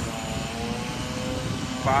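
5.9-litre Cummins turbo-diesel inline-six idling: a steady, fast-pulsing low rumble with a steady hum above it.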